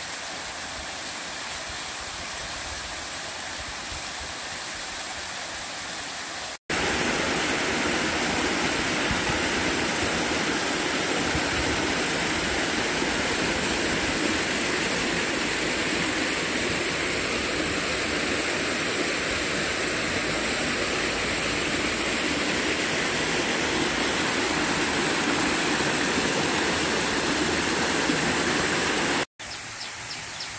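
A small waterfall and stream cascading over rocks: a steady rushing of water. It jumps abruptly louder and fuller about seven seconds in, with brief silent gaps there and near the end.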